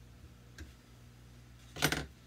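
Quiet, low steady hum with a faint single click of metal parts being handled about half a second in.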